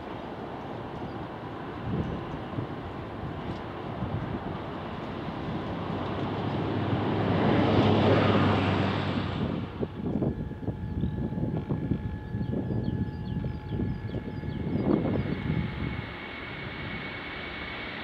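Jet engine noise from an Antonov An-124's four turbofans on the ground, swelling to its loudest about eight seconds in. After an abrupt change near ten seconds it gives way to gusty rumbling with a thin steady whine.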